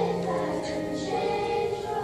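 School children's choir singing, the voices holding long notes.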